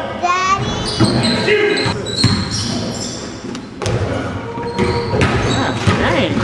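A basketball bouncing on a gym court amid players' calls and shouts, with short thuds and the echo of a large hall.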